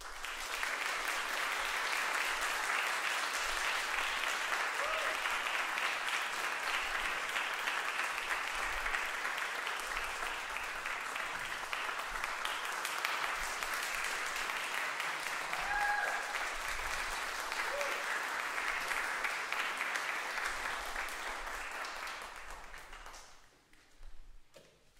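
Audience applauding for about twenty seconds, with a few short calls, dying away near the end.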